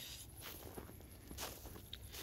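Footsteps in snow: two soft steps about a second apart.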